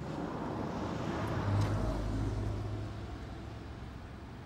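A motor vehicle passing by: engine and road noise swelling to a peak about a second and a half in, then fading away.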